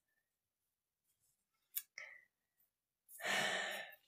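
A woman's breathy sigh, an audible exhale lasting under a second, comes about three seconds in. Before it there is near silence, broken by a faint click and a short small mouth sound.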